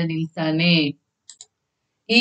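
A woman speaking for about the first second, then two quick, faint clicks close together.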